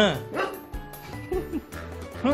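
A man crying out in pain in short yelps that fall sharply in pitch, loudest right at the start, then a smaller one about half a second in and fainter ones after, as hands press hard on his back during a massage treatment. Background music plays underneath.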